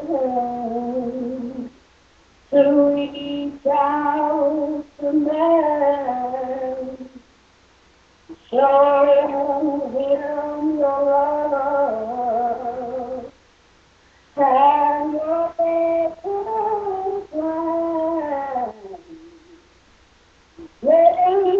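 A woman singing a gospel song unaccompanied, in four long phrases of held, sliding notes with short breaths between them.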